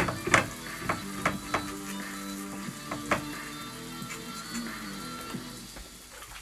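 Flatbread dough frying in hot oil in a non-stick frying pan: a steady sizzle with a few sharp crackles of spitting oil. Music plays in the background.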